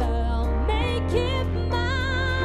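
Live band music with a woman singing a wavering, held melody over electric guitar, keyboard and drums; the low bass note changes a little under a second in.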